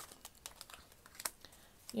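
A deck of cards being shuffled by hand: faint, irregular soft clicks and crinkles as the cards slide and slap against each other.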